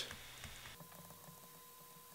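Quiet room tone with faint light ticks of a stylus writing on a tablet screen, and a faint steady electrical hum that comes in under a second in.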